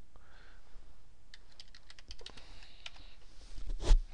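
Typing on a computer keyboard: a quick run of key clicks, then a single louder thump near the end.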